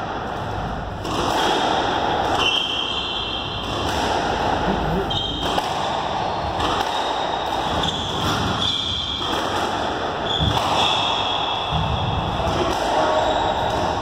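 A squash rally: repeated knocks of the ball off rackets and the court walls, with short high squeaks of court shoes on the floor, over a steady murmur of voices in the hall.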